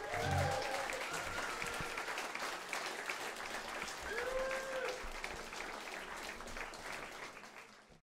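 Small audience applauding at the end of a live acoustic song, with a couple of shouted cheers. The applause fades out near the end.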